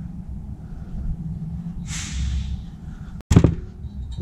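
Workshop handling noise as an aluminium Harley crankcase half is moved off the press, over a low steady shop hum: a short hiss about halfway through and a sharp knock near the end.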